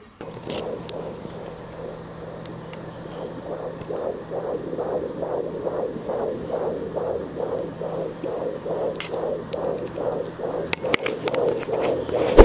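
Fetal heartbeat picked up by an Angel Sounds handheld fetal Doppler, heard through its earphone held to a microphone. A plain static hiss for the first few seconds gives way to a fast, even train of whooshing beats, about two to three a second. A few sharp clicks come near the end.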